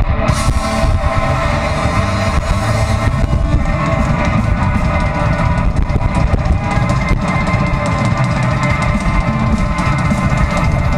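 Live rock band playing an instrumental passage: electric guitars over a drum kit, loud and steady, through the stage PA. A cymbal burst comes right at the start.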